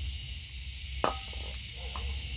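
A single sharp click about a second in, over a steady high hiss and low rumble of background noise.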